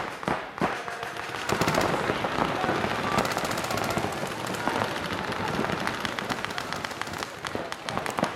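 Paintball markers firing rapid strings of shots, several guns going at once, in quick even runs of pops that start about a second and a half in and carry on through the rest.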